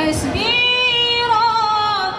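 A woman singing solo into a microphone, unaccompanied: one long held note beginning about half a second in, with a wavering turn in its middle.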